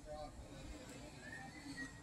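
Faint, nearly silent background with no clear sound event.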